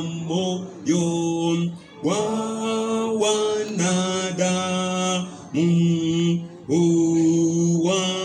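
Unaccompanied hymn sung slowly by a male voice through a microphone, in long held notes with short breaks between phrases.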